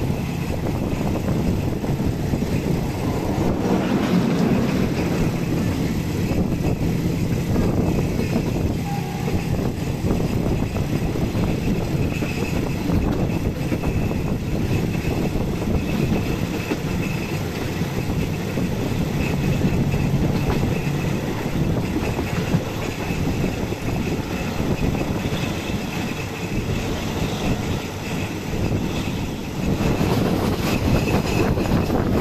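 Passenger train running along the track, heard from an open carriage window: a steady rumble of wheels on rails.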